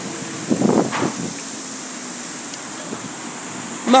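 Steady outdoor street noise, an even hiss of wind and traffic, with a short faint sound about half a second in.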